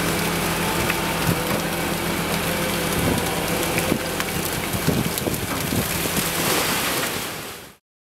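Chum salmon thrashing and splashing in a hauled-in set net, with a steady spatter of water and scattered small splashes, over a faint low hum. The sound fades out just before the end.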